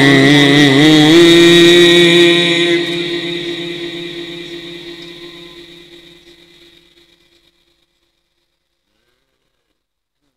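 A male Quran reciter's chanted voice holding the long drawn-out final note of a verse, wavering in pitch at first and then steady. About three seconds in it fades away slowly and is gone by about seven seconds, leaving silence.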